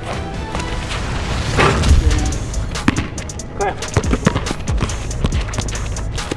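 Background music under a string of sharp knocks and thumps from a basketball being shot and bounced on a wet court, with one loud noisy thud about two seconds in.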